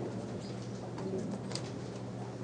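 Room ambience: a steady low hum with a few faint clicks and ticks.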